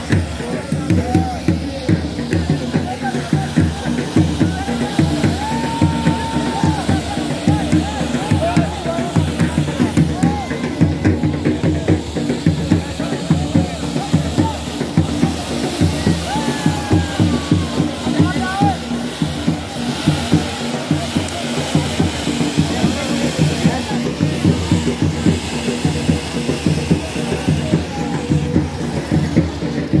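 Dhol drums playing a fast, steady beat, with crowd voices, over the hiss of ground fountain fireworks spraying sparks.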